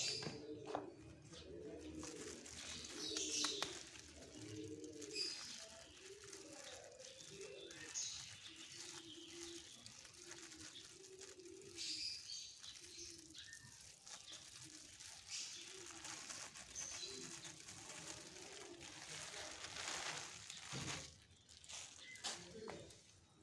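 A dove cooing in a long series of short, repeated notes, with small birds chirping higher now and then.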